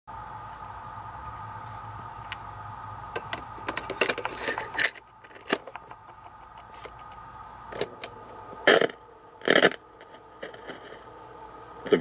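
Clicks and clunks of a portable cassette recorder being handled: a cassette loaded and its door snapped shut, then its piano-key buttons pressed, with two louder clunks late on. A steady hum sits under the first half and stops about five seconds in.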